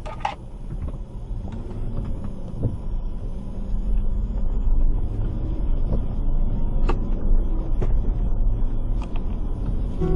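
Car driving, heard from inside the cabin: a steady low rumble of engine and tyres on a wet road, growing louder about four seconds in, with a few faint clicks.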